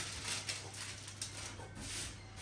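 Baking paper being rubbed and smoothed flat by hand onto a dampened metal baking tray, a papery rustling and rubbing with a few light brushes.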